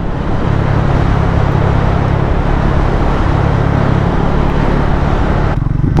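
Triumph Speed 400's single-cylinder engine running at a steady cruise, with steady wind and road noise rushing over the microphone.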